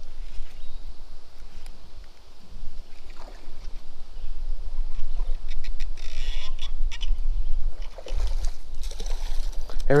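Wind buffeting the microphone in a low rumble, with scattered clicks and a short splashy hiss about six seconds in, while a hooked carp is played on a baitcasting rod and reel.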